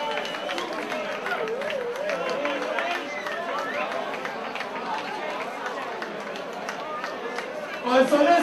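Club crowd chattering and calling out, many voices overlapping, with no music playing.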